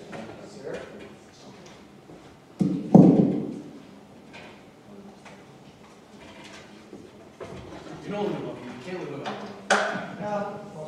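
Handling noise on live stage microphones: a loud dull thump about three seconds in and a sharp knock near the end, with low indistinct off-mic talk between them.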